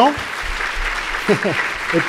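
Audience applauding steadily, with a brief laugh near the end.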